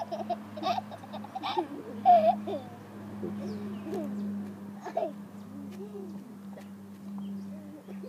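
Soft babbling and little giggles from a toddler in short scattered bits, over a steady low hum.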